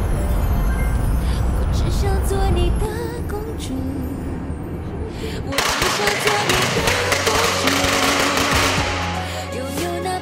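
A coil of firecrackers going off in a rapid, dense crackle for about three and a half seconds, starting about five and a half seconds in. Background music with a melody plays throughout.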